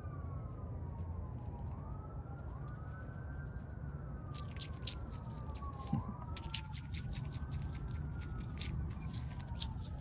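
An emergency siren wailing, its pitch sweeping slowly up and down, with two wails overlapping, over a steady low hum. From about four seconds in, quick crisp clicks of a striped skunk chewing dried mealworms.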